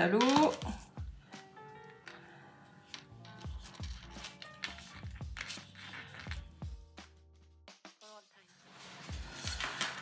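Soft background music with light rustling and tapping of fingers pressing crumpled gauze down onto a glued card cover.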